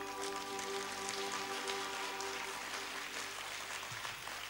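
Audience applause breaks out as the final held keyboard chord fades away over the first few seconds.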